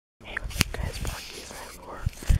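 A person whispering close to the microphone, with handheld camera handling: a sharp click about half a second in and a few low bumps.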